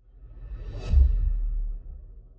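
Logo sting sound effect: a whoosh that swells up to a deep, booming hit about a second in, its low rumble held briefly before it fades away.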